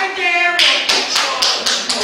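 Sharp hand claps in a steady rhythm, about four a second, starting about half a second in, with a voice over them.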